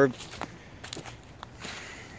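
Footsteps on dry leaf litter: a few soft, scattered crunches underfoot.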